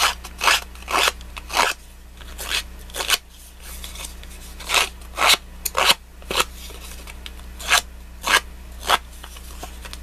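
Short, crisp snips of a small hand-held paper tool cutting into postcard card stock: about a dozen separate cuts at uneven intervals, several in quick succession around the middle.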